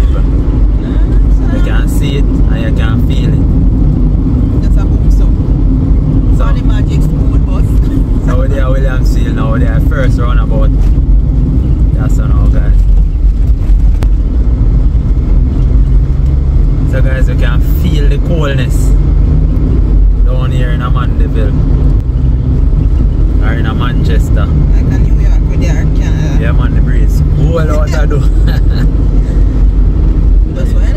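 Steady low rumble of a car's engine and tyres heard from inside the cabin while driving at road speed, with voices talking over it on and off.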